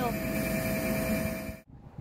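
Double-deck electric passenger train running on the adjacent track: a steady rumble of wheels on rail with a thin steady whine over it, cut off abruptly near the end.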